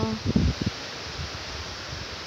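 Wind on the phone's microphone outdoors: a few low rumbling gusts in the first half second, then a steady hiss.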